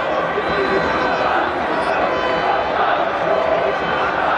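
Large football stadium crowd, many voices shouting at once at a steady level.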